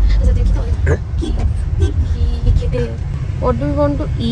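Steady low rumble of a car heard from inside the cabin, under a voice talking.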